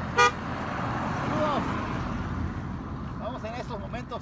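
A car horn gives one short, friendly toot just after the start, from a passing driver greeting people at the roadside. The hiss of the car's tyres and engine on the road follows as it goes by.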